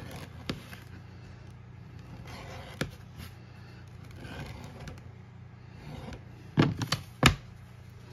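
Leather edge beveler scraping along the edge of a leather holster piece in a few faint passes over a steady low hum. Near the end come several sharp knocks, the loudest sounds, as the tools are set down on the cutting mat.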